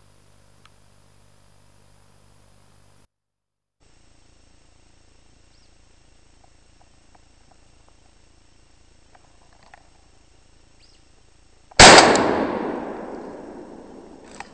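A single shotgun shot, close and very loud, fired at a woodcock on its dusk flight, near the end; its echo rolls through the forest and dies away over about two seconds.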